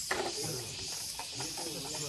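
Indistinct voices talking over a steady high-pitched hiss, with a short knock right at the start.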